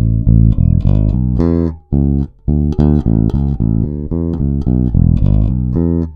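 Sterling by Music Man Sub Series StingRay 4 electric bass played fingerstyle, its active preamp set to full volume with the bass control boosted halfway. It plays a quick run of short, punchy notes, with a couple of brief gaps about two seconds in.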